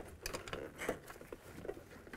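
Light, irregular clicks and rustling as a gloved hand pushes a length of metal brake line through the rubber accordion seal between a truck door and the cab.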